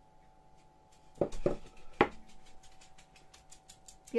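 A carved wooden gingerbread mold being knocked to free the pressed dough: a couple of dull knocks just past a second in, then a sharper, louder one about two seconds in.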